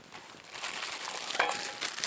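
A plastic bag crinkling and rustling as it is handled, starting about half a second in, with small clicks and crackles.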